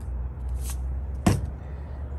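A steady low rumble, with a brief high hiss and then a single sharp knock a little after a second in.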